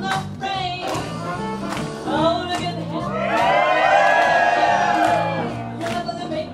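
Swing jazz dance music with a steady beat and bass line; from about two seconds in, audience cheering and whooping swells over the music for a few seconds.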